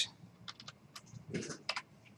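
Computer keyboard typing: a handful of separate, quick key clicks at uneven spacing.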